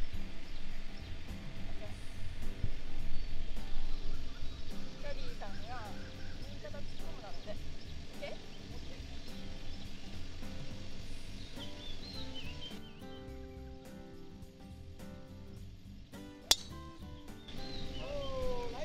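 A single sharp crack of a driver striking a golf ball off the tee, about a second and a half before the end; it is the loudest sound here. Background music and voices run under it.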